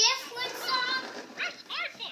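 A young child's high-pitched wordless vocalising, with a few short, sharp yelps about a second and a half in.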